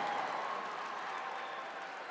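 Studio audience applause, an even crowd noise that slowly dies away.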